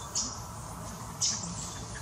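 Two short, high-pitched squeaks from young macaques wrestling, one just after the start and one a little past a second in, over a steady background hiss.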